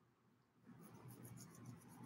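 Near silence with a faint, fast scratchy rubbing that starts a little under a second in: fingers rubbing over beard stubble.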